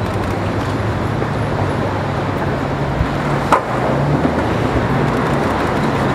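Street traffic noise with the low hum of idling vehicle engines. A short sharp click about halfway through is the loudest moment.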